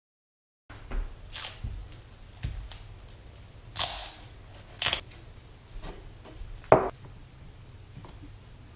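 Duct tape pulled off the roll and torn in several short pulls, starting about a second in, with hands pressing it around a plastic sprinkler solenoid valve and PVC pipe fitting.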